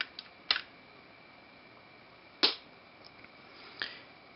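Light clicks and taps of a cardboard gum pack and a small copper wire coil being handled and set down on a tabletop: a few short, sharp ticks, irregularly spaced, over a faint steady high tone.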